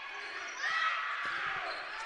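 Volleyball rally in a gymnasium: a crowd of spectators' voices with a few short knocks of the ball being played, the crowd noise rising about half a second in.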